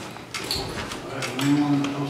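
A man's low voice held briefly in a murmur in the second half, over scattered light knocks and shuffling.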